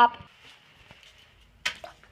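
A woman's voice trailing off, then a quiet room with a short, sharp noise a little before the end.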